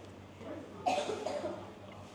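A person coughs once, about a second in: a short, harsh burst.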